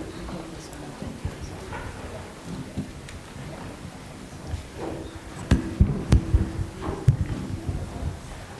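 Low thumps and knocks from handheld microphones being handled as the singers shift into place, with a cluster of sharper knocks about five and a half to seven seconds in.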